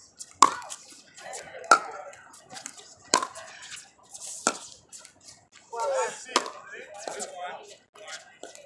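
A pickleball rally: paddles hitting a hard plastic pickleball, five sharp pocks about a second and a half apart. A player's voice is heard briefly about six seconds in.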